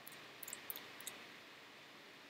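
Quiet room tone with a few faint, brief clicks between about half a second and a second in: lip and tongue smacks of someone tasting a beer.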